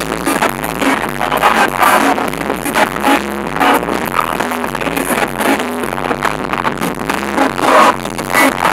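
Loud live band music with a steady beat, amplified through the stage PA, with singers' voices over it.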